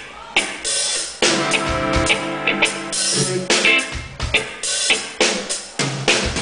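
A live band playing a song: a drum kit's kick, snare and hi-hat hits drive a steady beat under electric guitar and keyboard tones.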